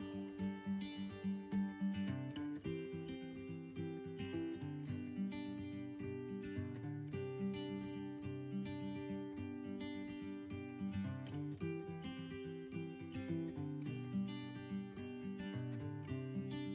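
Background music played on acoustic guitar, a steady plucked and strummed pattern of notes.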